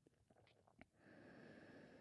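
Near silence with a couple of faint clicks, then, from about a second in, the faint steady hiss of a slow ujjayi breath, air drawn through a narrowed throat.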